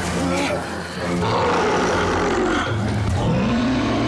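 Werewolf creature voice from a TV drama: drawn-out snarling roars that bend up and down in pitch, over a low, steady drone.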